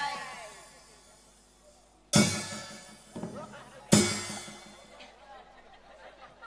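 Nagara drum and cymbals: the close of a drum phrase rings away, then two single loud strikes about two seconds apart, each ringing out.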